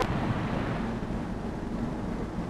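Steady wind noise and hiss from an open-air 1941 newsreel recording on a ship's deck, with a low rumble and no clear event.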